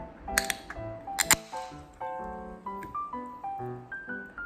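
An aluminium soda can being opened: a couple of sharp clicks, then the tab cracks open about a second in with a brief fizzing hiss. Light piano background music plays throughout.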